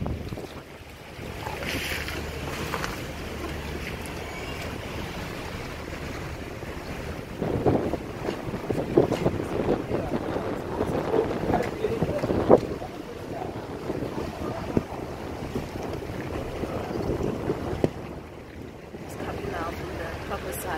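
Wind buffeting a phone's microphone, a steady low rumble, with muffled voices in the background for several seconds in the middle.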